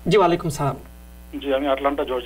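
A man's voice saying two short phrases, a greeting repeated, over a steady low mains hum.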